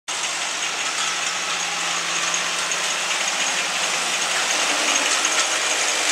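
Automatic oral-liquid filling and ROPP capping machine running: a steady mechanical whir with light, rapid clicking of its moving parts.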